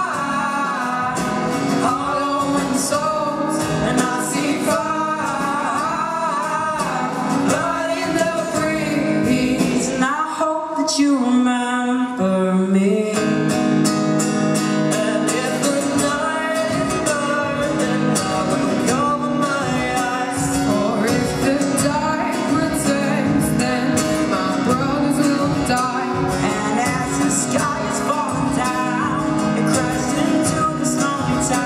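Teenage boys' vocal group singing in harmony, with strummed acoustic guitars and a steady drum beat. About ten seconds in the beat and low end drop away briefly under the held voices, then come back in.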